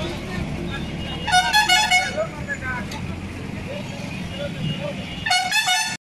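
Street sound of a road march: traffic running, with a vehicle horn honking and voices shouting in two short bursts, the second near the end.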